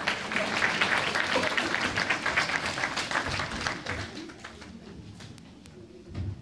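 Audience applauding, starting suddenly as the music ends and dying away over the last couple of seconds.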